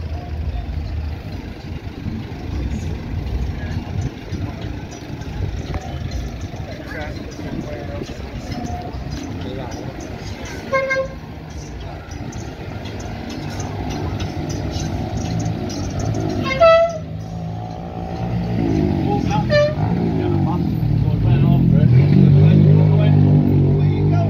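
Road traffic passing along a street, with a few short car-horn toots; the loudest toot comes about two-thirds of the way through.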